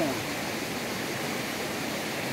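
Steady rushing of a flowing river.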